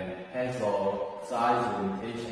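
A man speaking in two short phrases, the words not made out.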